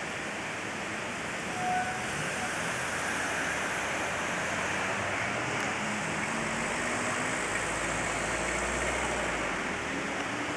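Steady hiss of outdoor street ambience on an analog camcorder recording, with a low rumble building in the last few seconds.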